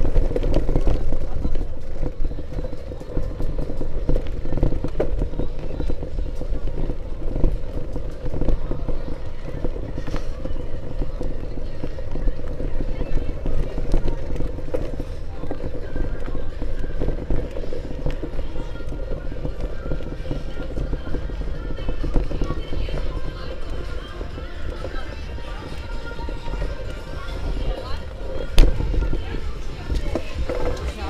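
Camera handling and wind noise from an action camera being carried while walking: a steady low rumble with rubbing and knocking crackles. Indistinct voices and music sit faintly behind it, clearer in the second half.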